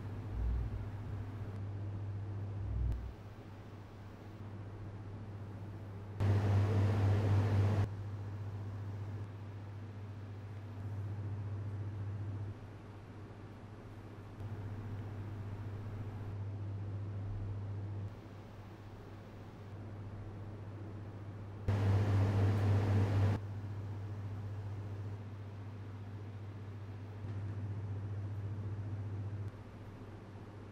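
Ceiling air-conditioning unit running as room noise: a steady low hum under a hiss. Its loudness and brightness step up and down every couple of seconds as different microphones are switched in, with two louder, brighter stretches, about six and twenty-two seconds in.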